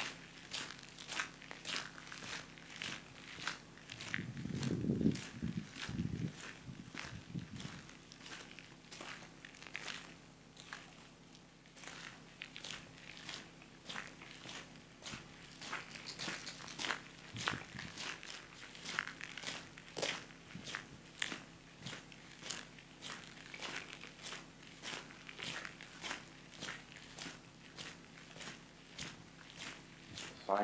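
Footsteps of a person walking on a gravel road dusted with light snow, at a steady walking pace of about two steps a second. A brief low rumble comes about five seconds in.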